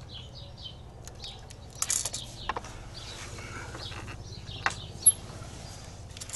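A few scattered light clinks and scrapes of steel as a thin rebar rod and a tape measure are handled at a hand-operated rebar bender, over a faint low hum.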